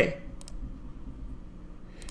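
Two faint, quick clicks about half a second in, over a low steady hum.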